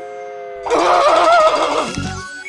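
Cartoon underscore holding a few notes, then, about half a second in, a loud, noisy cartoon sound effect with a wavering pitch that lasts just over a second.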